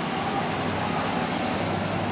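A pickup truck driving past on the street: a steady rush of engine and tyre noise with a low hum underneath.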